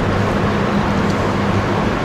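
Steady background rush with a low, even electrical hum underneath, picked up through the lapel microphone while no one speaks.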